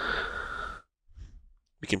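A person's breath out near the microphone, a short hiss-like exhale lasting under a second, followed by a fainter breath before speech starts near the end.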